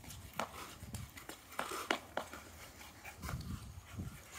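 Ice skate blades scraping and knocking on hard ice in short, uneven strokes: a handful of sharp clicks over a low rumble.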